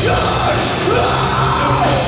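Hard rock band playing live: a male lead singer singing hard over electric guitars and bass guitar, loud and continuous.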